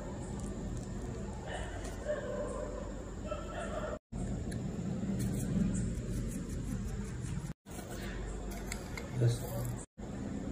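Indistinct voices over a steady low hum, with a short spoken 'yes' near the end. The sound drops out briefly twice, at cuts.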